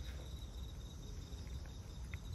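A high, evenly pulsing insect trill runs steadily, over a low rumble, with a few faint clicks from a cat chewing wet food.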